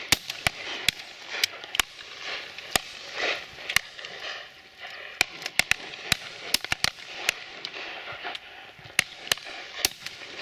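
Shotguns firing at driven gamebirds: a rapid, irregular run of about fifteen to twenty shots, some sharp and close, others fainter and distant, from several guns along the line.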